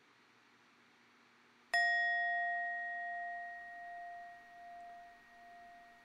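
A bell struck once, a little under two seconds in, ringing with a clear tone and dying away slowly with a gentle wavering.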